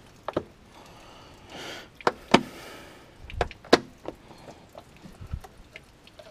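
Sharp knocks and clatter of hard plastic as the muddy air box of a flooded Yamaha Rhino side-by-side is worked loose and lifted out by hand, with a short rushing noise about a second and a half in and a couple of dull thuds.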